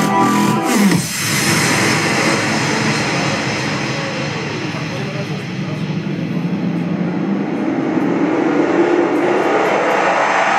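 Electronic breakbeat music over a club sound system. The beat drops out about a second in, leaving a noisy synth wash with a sweep that dips and then rises steadily towards the end, building up to the next drop.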